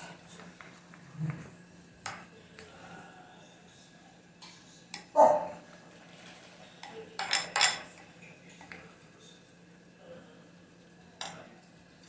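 A metal spoon stirring peanuts through thick melted milk chocolate in a glass bowl, with scattered clinks and knocks of the spoon against the glass: the loudest knock about five seconds in and a quick run of clinks around seven and a half seconds.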